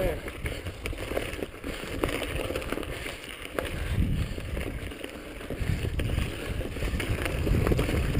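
Mountain bike rolling fast down a rough dirt trail: tyre rumble and wind on the microphone, with the bike rattling and clicking over bumps.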